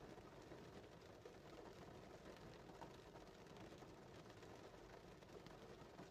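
Near silence inside a parked car's cabin, with a faint, even patter of rain on the car.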